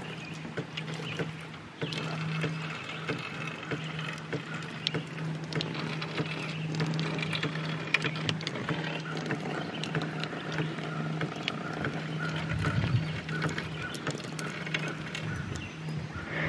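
Water streaming from the end of a hydraulic ram pump's delivery pipe and splashing below, with small irregular knocks as the pipe is handled and lowered. A steady low hum runs underneath.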